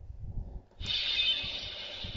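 Electronic sound effect from a DX Swordriver toy sword's small speaker, set to its fire mode: a steady, hissing burst that starts about a second in as the blade lights up red, after a few soft handling knocks.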